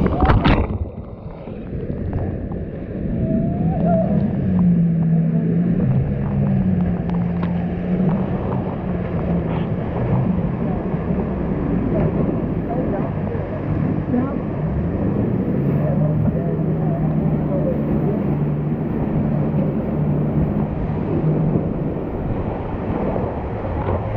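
Whitewater rapid rushing and splashing around a raft: a wave crashes over the bow in the first second, then rough water churns steadily. A low droning hum whose pitch steps up and down runs under the water noise for most of the time.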